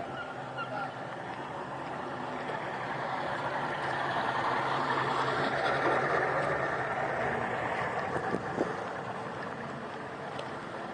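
Boat engine idling with a steady low hum, under a rushing noise that swells through the middle and fades near the end.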